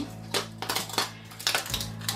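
Background music with steady low tones, under a few light clicks and rustles of florist wire being wrapped around a styrofoam block.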